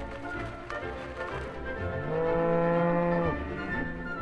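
A cow moos once: a single low call of just over a second, starting about two seconds in, with faint background music beneath.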